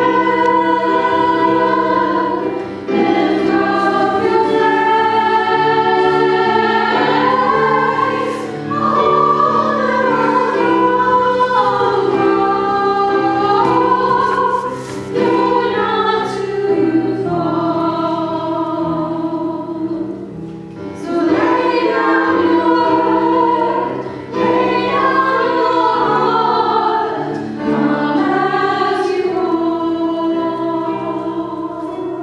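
Several voices singing a hymn together with instrumental accompaniment, in long held phrases with short breaks between them every few seconds.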